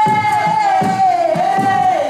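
A singer's long, high held call, dipping in pitch in its second half and breaking off about two seconds in, over steady drum beats, part of a traditional Angolan song-and-dance number.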